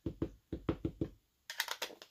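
Small ink pad dabbed repeatedly against a clear rubber stamp on an acrylic block: about six dull taps in the first second. Near the end come a few sharper clicks as the acrylic block is set down on the paper.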